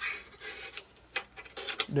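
Handling noise from a handheld phone being moved: a short rustle followed by a few sharp, separate clicks and light rubbing.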